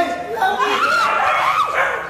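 A dog barking, about three short, high barks, with people's voices around it.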